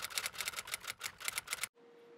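Typewriter key-strike sound effect: a rapid run of clacks, about seven a second, that stops suddenly near the end.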